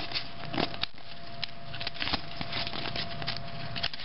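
A football-card pack wrapper crinkling and tearing in the hands as the pack is opened, with many small irregular crackles.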